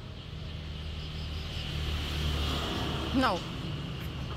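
Low rumble of a passing motor vehicle that swells and then eases off, over a steady high drone of insects; a person says a short "no" about three seconds in.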